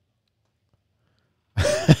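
Silence, then about one and a half seconds in a man gives a short, breathy laugh into a close microphone.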